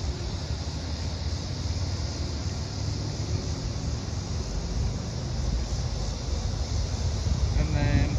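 Wind buffeting the microphone outdoors: a steady, uneven low rumble with a faint hiss above it.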